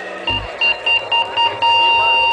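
Live band music: a high electronic beep pulsing about five times a second, then held as one steady tone from about halfway through. A short low thump comes just before the beeping starts.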